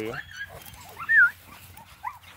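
American Bully puppy giving a short, high whine whose pitch wavers up and down about a second in, with a few fainter squeaks around it as the puppies play.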